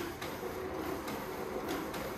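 HP M880 multifunction printer's automatic document feeder pulling a stack of pages through the scanner: a steady mechanical whir with a low hum that starts suddenly.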